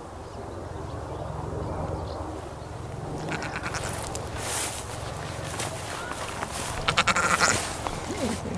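Goat bleating: short, wavering calls in the second half, the loudest a cluster near the end, over a steady low rumble.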